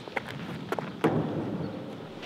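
A few faint knocks of a basketball, thrown and bouncing off the board and court, over a steady outdoor background hiss.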